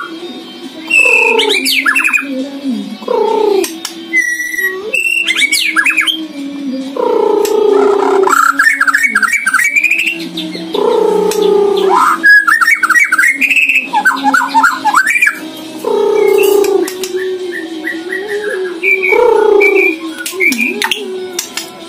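A white-rumped shama (murai batu) in full song, with mimicked phrases of other birds woven in. It sings loud, varied phrases one after another, each a second or two long with short breaks, mixing falling notes, rapid trills and chatter.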